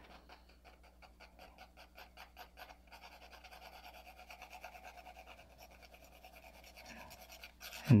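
Faint quick strokes of a soft 6B graphite pencil on drawing paper, several a second in an even rhythm, as the portrait is shaded.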